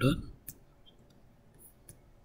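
Computer mouse clicking: one sharp click about half a second in and a fainter one near the end.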